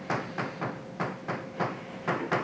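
Chalk writing on a blackboard: a quick run of sharp chalk taps and short strokes, about four or five a second, as an equation term is written out.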